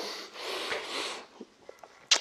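A man breathing out heavily and noisily, winded from a hard set of push-ups, for about a second. A few faint clicks follow near the end.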